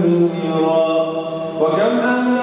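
A man's voice chanting Quranic recitation in long, drawn-out melodic notes. Near the end there is a short break, and then he moves up to a higher held note.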